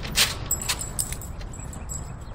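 Metal dog-collar tags jangling in quick, irregular clicks as a dog moves about, the loudest cluster just after the start, over a low rumble of wind on the microphone.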